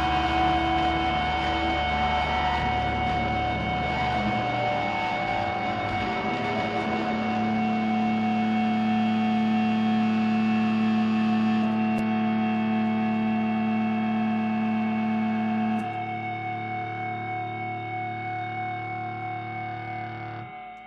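Live psychedelic rock band ending a song on a drone of sustained, distorted electric guitar through effects, with several held notes ringing together. The low notes drop out about four seconds in. About sixteen seconds in the level falls and the sound starts dying away.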